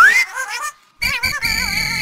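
Short comic sound-effect jingle: a rising whistle-like glide that ends just after the start, a brief warbling tone, a moment of silence, then a wavering, wobbling tone over a steady high note.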